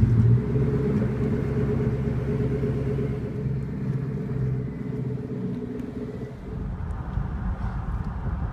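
Ford GT's supercharged 5.4-litre V8 running steadily at low revs just after startup. Its even engine note drops out about six seconds in, leaving a low, noisy rumble.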